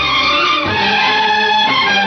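Instrumental interlude of an old Hindi film song: orchestral melody instruments playing held, sliding notes between sung lines.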